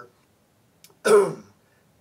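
A man clears his throat once, a short loud rasp about a second in.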